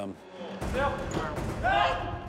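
Indistinct voices in a large, hard-walled room, starting about half a second in over a low rumble of background noise.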